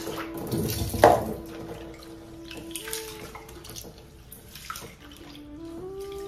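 Tap water running into a metal pot in a stainless steel sink, with one loud knock about a second in and small clicks of the pot and hands in the water.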